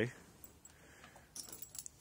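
A dog's metal chain collar and tag jingling briefly, a short cluster of light metallic clinks about a second and a half in.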